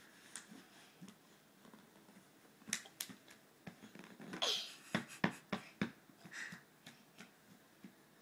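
Children's hands clapping and slapping in a scattering of sharp smacks, bunched in the middle, with a short falling squeal among them.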